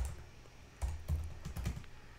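Computer keyboard typing: a quick run of several key presses starting about a second in.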